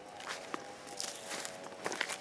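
Footsteps through dry, burnt stubble and ash, a step roughly every half second, each with a light crunch of brittle stalks and leaves. A steady faint drone of a few tones runs underneath.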